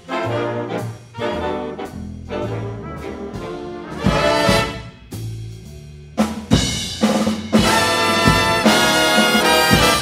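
Big band playing a jazz arrangement live: trumpets, trombones and saxophones in short ensemble phrases separated by brief gaps, with drum hits. The last few seconds are louder, with fuller held chords.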